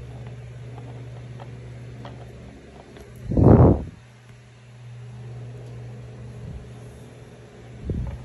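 A steady low mechanical hum, broken by one loud muffled bump about three and a half seconds in and a smaller one near the end.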